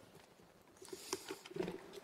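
Faint rustling with light ticks and taps from belongings being gathered up at a lectern, starting about a second in.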